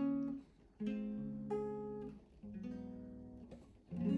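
Hollow-body archtop guitar played unaccompanied: three slow, jazzy chords, each struck once and left to ring for about a second and a half before the next.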